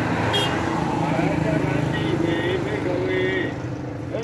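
A van and a motorcycle passing on the road, their engines a steady low drone that fades after about two and a half seconds, under a voice chanting in long, drawn-out tones.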